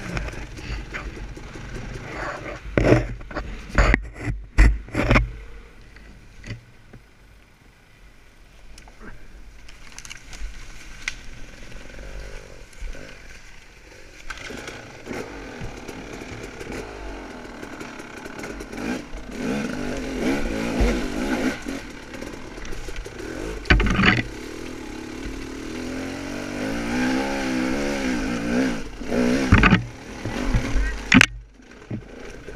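Off-road motorcycle engine running and revving, its pitch rising and falling in repeated waves through the second half. Knocks and clatter in the first few seconds, and another sharp knock about two-thirds of the way in.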